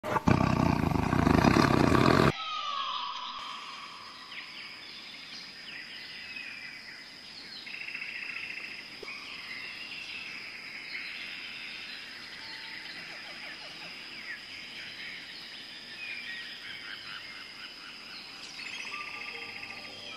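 A loud burst of about two seconds at the very start, then forest ambience: many birds chirping and calling over a steady high-pitched insect drone.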